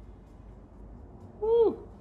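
Low steady room rumble, then about one and a half seconds in a short vocal exclamation, like an "ooh", falling in pitch.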